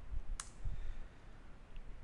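A single sharp computer keyboard keystroke about half a second in, the Enter key running a typed terminal command, over a low background rumble.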